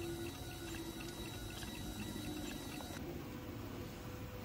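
Faint stepper-motor tones of a 3D printer at work, stepping between a few pitches every second or so over a steady low hum.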